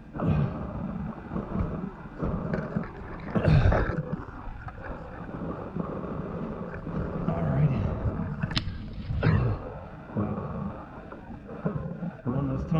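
A person crawling on hands and knee pads over a damp, sandy cave floor: irregular scuffing and scraping, with a sharp knock about eight and a half seconds in.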